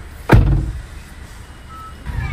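A car door shut once: a single heavy thump about a third of a second in, the loudest thing here, dying away quickly.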